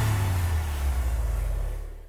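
A low bass note held without a beat, fading out near the end: the closing note of an upbeat electronic dance music track.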